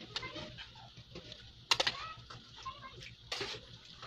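Metal spoon clinking and scraping against an aluminium pot while scooping cooked penne out of it, with sharp clinks about halfway through and again near three-quarters of the way.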